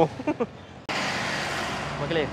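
Brief trailing speech, then a steady rushing noise that cuts in suddenly a little under a second in and holds evenly to the end.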